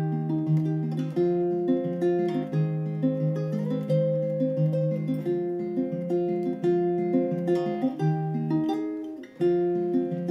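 Background music: acoustic guitar playing a steady run of plucked notes, with a short gap just before the end.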